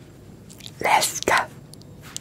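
A short whispered greeting into a close microphone: two breathy syllables about a second in.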